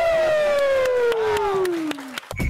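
A descending whistle sound effect: one long pitched tone sliding steadily downward and dying away just as it reaches its lowest point.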